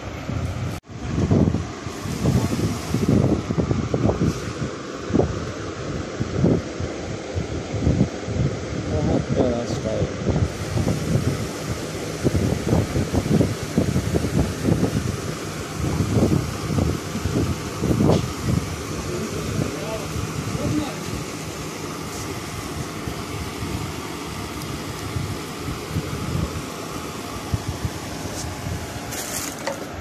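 Indistinct voices talking in irregular bursts over a steady mechanical hum, the voices thinning out in the second half.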